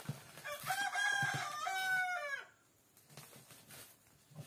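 A rooster crowing once, a call of about two seconds that rises, holds and falls away at the end. Soft crackles of bubble wrap being cut with a knife come before and after it.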